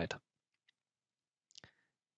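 The last syllable of a man's speech, then a quiet pause with a faint tick and one short, sharp click about a second and a half in.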